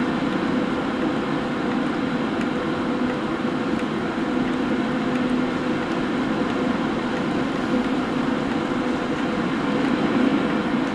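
Electric inline duct fan running steadily: an even rush of air with a steady low hum.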